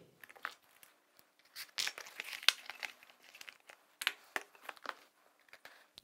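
A cardboard box being handled and opened by hand: irregular rustling, scraping and small clicks of its flaps and packing.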